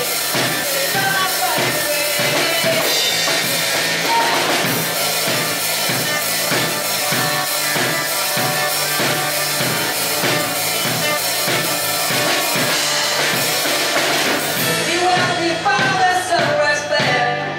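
A live rock band plays an instrumental stretch of a song: electric guitar and bass over a steady drum-kit beat. The lead vocal comes back in near the end.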